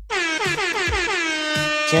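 Air-horn sound effect: one long blast that slides down in pitch at its start and then holds steady, over a music beat with a low thud about twice a second.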